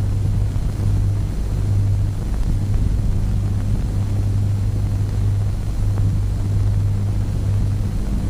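Steady low hum with an even hiss over it: the background noise of an old film soundtrack, with no speech or distinct sound events.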